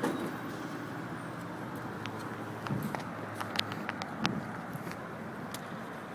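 Outdoor city background: steady traffic noise, with a few light clicks and knocks through the middle.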